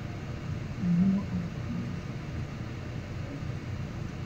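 A brief low voice sound about a second in, over a steady low rumble and hiss.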